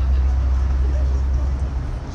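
Steady low rumble of a MAN ND 313 double-decker city bus under way, heard from inside on the upper deck, easing slightly near the end.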